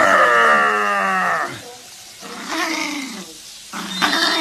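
A small dog howling: one long cry that falls in pitch, then two shorter cries.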